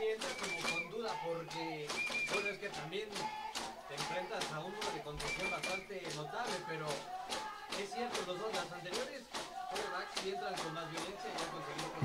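Faint voices from the football field, players and sideline calling out, with many light clicks and a few short high-pitched tones.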